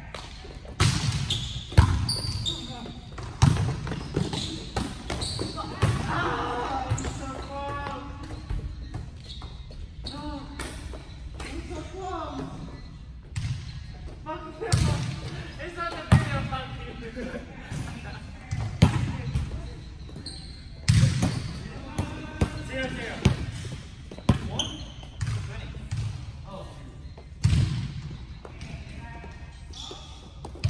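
Volleyball play on an indoor court: repeated sharp hits on the ball and the ball thudding on the floor, with short high squeaks from shoes on the court and players' voices calling out between hits.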